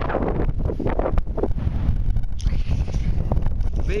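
Wind buffeting the camera's microphone: a loud, continuous low rumble with uneven gusts and a few small knocks.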